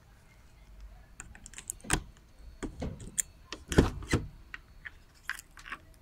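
A bunch of keys jangling and clicking while a key is worked in the keyed handle lock of an Optare Alero minibus's side door. Several sharp clicks follow, and two louder metallic clunks come about two seconds in and near four seconds as the lock and door latch give.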